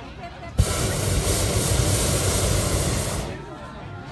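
Hot air balloon's propane burner firing in one loud blast of nearly three seconds, a rushing hiss that starts abruptly about half a second in and cuts off near the end, heating the air in the envelope to give it lift.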